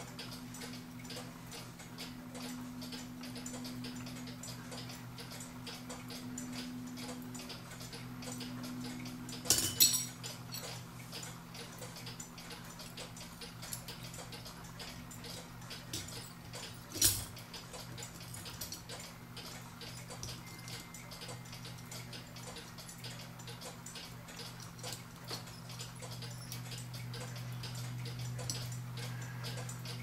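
Small metallic clicks and taps of a cuckoo clock movement's brass plates, gears and pins being handled and fitted together, over a steady low hum. Two louder sharp clicks stand out, about ten seconds in and again about seven seconds later.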